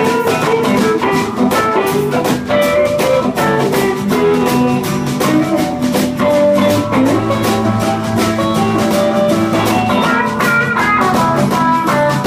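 A live blues band playing an instrumental break: electric guitar lead lines over acoustic rhythm guitar and a drum kit keeping a steady beat.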